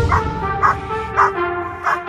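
German Shepherd barking four times, about one bark every half second, while lunging against its leash at a decoy in a bite suit, over background music.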